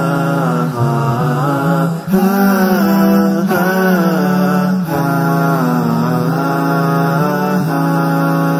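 Chanted vocal music with no audible instruments: a voice sings long, wavering, ornamented notes in phrases of one to two seconds over a steady low held tone.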